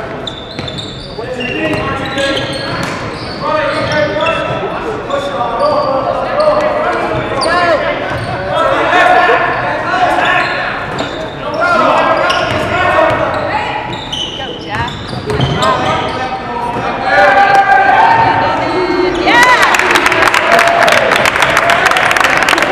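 Basketball game in a gym: a ball bouncing on the hardwood floor and players' and spectators' voices echoing around the hall. For the last couple of seconds a rapid run of sharp thuds and squeaks grows louder as players run the length of the court.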